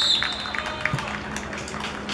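A referee's whistle blast cutting off at the very start, followed by sparse short clicks and faint distant voices around an outdoor football pitch.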